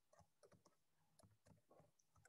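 Very faint computer keyboard keystrokes against near silence: about half a dozen scattered soft clicks.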